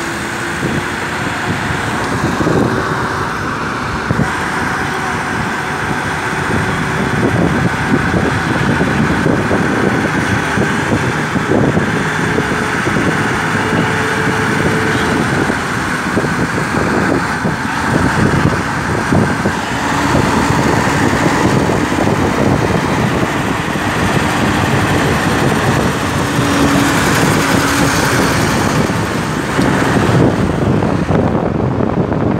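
Steady road traffic noise: car engines and tyres running close by on a busy road.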